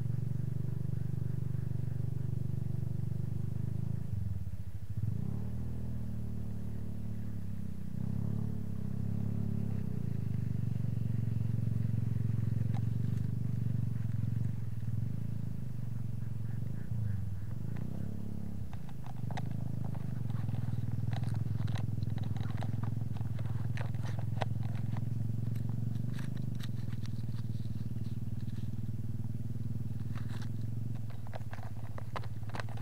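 A small engine running steadily, with its speed changing briefly a few times. Scattered light clicks join in during the second half.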